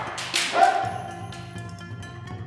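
A short, loud kendo kiai shout about half a second in: the cry a kendoka gives with a strike of the bamboo shinai. Background music plays underneath and fades toward the end.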